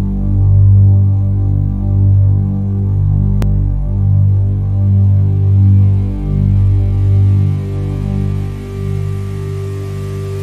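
Deep, steady low synth drone swelling and easing roughly once a second, the intro of a pop track before the vocals come in. A single faint click about three and a half seconds in.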